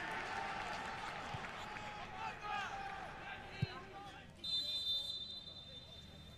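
Football pitch sound with no crowd: scattered distant shouts from players, one sharp thud of a ball being struck about three and a half seconds in, then a single referee's whistle blast lasting about a second.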